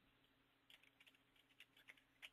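Very faint typing on a computer keyboard: a few soft, scattered keystrokes over near silence.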